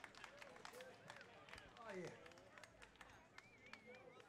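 Near silence between songs: faint, distant voices with scattered small clicks and knocks, and a brief warbling high tone near the end.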